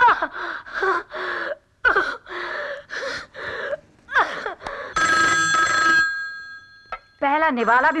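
A telephone rings once, a single ring about a second long about five seconds in, dying away over the following second.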